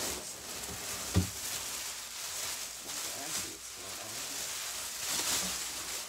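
Large foam packing sheets rubbing and rustling as they are pulled out of a cardboard shipping box, with a sharp thump about a second in.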